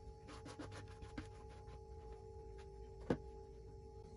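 Raw chopped spinach, onion and tomato being tossed by hand in a stainless steel pot: faint rustling with small clicks through the first couple of seconds, then a single sharp tap about three seconds in. A faint steady hum runs underneath.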